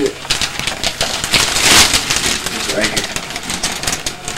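Wrapping paper rustling and crinkling in short scratchy bursts, loudest about two seconds in, as a child claws at a large gift-wrapped box, struggling to tear the paper open.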